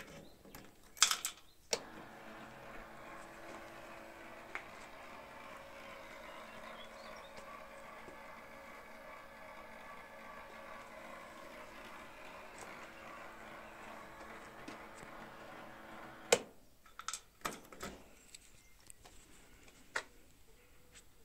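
A couple of sharp clicks as the light switch is worked, then the small electric motor of an amber rotating beacon light whirring steadily for about fourteen seconds before it stops, followed by a few more clicks.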